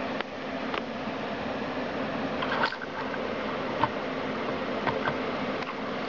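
A steady low hum of room tone, with a few faint short clicks and knocks, one of them a little louder about two and a half seconds in.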